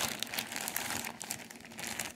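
Clear plastic bag crinkling and rustling as it is handled and moved about, an irregular run of crackles.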